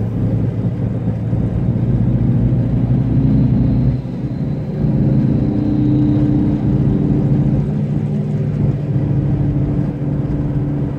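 Steady engine and road noise of a car being driven, heard from inside the cabin. The level dips briefly about four seconds in, and the engine hum then settles a little higher in pitch.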